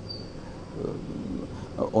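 Low background murmur of voices and outdoor noise in a pause between a man's sentences in Hindi. His speech starts again near the end.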